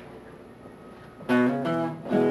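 Acoustic guitar: after a second or so of quiet, a strummed chord comes in and rings on, the opening of the song's intro.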